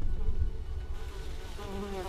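A fly buzzing, its pitch wavering, growing loudest near the end, over a low rumble that fades away in the first second.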